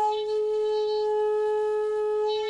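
Shinobue (Japanese bamboo transverse flute) holding one low note steadily at full volume, rich in overtones. The note is the flute's lowest, the '0' note or tsutsune, played with all finger holes closed.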